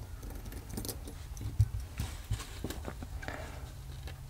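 Small metal clicks and taps from handling a wind-up music box movement as its steel tuning comb is lifted off the base. There are a few sharper ticks in the middle, and no notes are played.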